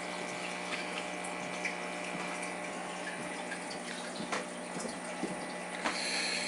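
Aquarium water circulation running steadily: an even rush of moving water with a constant low hum from the pump, and a few faint ticks.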